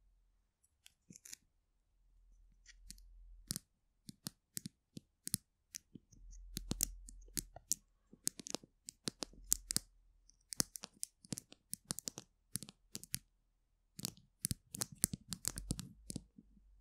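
Long fingernails tapping and clicking on a plastic glue stick held close to the microphone: irregular sharp taps, sparse at first and coming thick and fast later, with soft low rumbles as it is handled.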